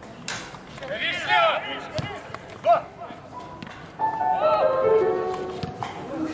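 Men shouting on an outdoor football pitch, with a couple of sharp knocks. About four seconds in, music with held notes that step downward comes in.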